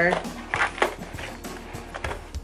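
Cardboard toy box being opened and its clear plastic insert slid out, making a few short scrapes and clicks about half a second to a second in.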